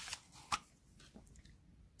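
Plastic cap pulled off a roll-on deodorant bottle, with light handling rustles and one sharp click about half a second in.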